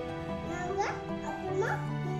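A young girl's voice speaking in short phrases that rise sharply in pitch, twice, over steady background music.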